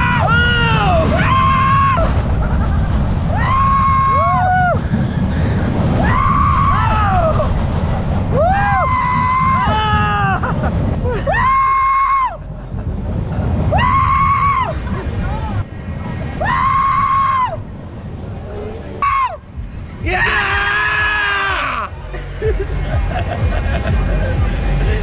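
Two men screaming on a swinging thrill ride: about a dozen long, held yells, one every couple of seconds, over heavy wind rumble on a ride-mounted action camera's microphone.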